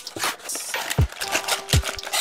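A cardboard trading-card blaster box being handled and its flap pulled open, with a brief rustle of cardboard and a couple of sharp taps, about a second in and near the end.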